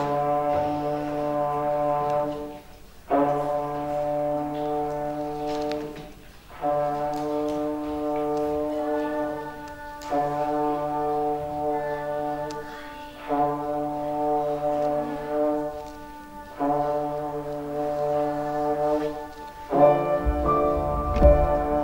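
Trombone playing one low note over and over, each held for about three seconds, six times with short breaks between.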